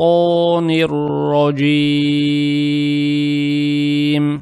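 A man reciting Quranic Arabic in melodic tajweed chant: a few short sung syllables, then one long steady held note from about a second and a half in.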